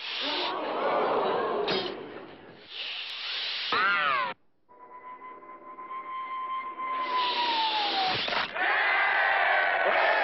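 Cartoon sound effects of an arrow in flight: a long whistling tone that slowly falls in pitch and cuts off abruptly about eight and a half seconds in as the arrow strikes the target, followed by a crowd cheering.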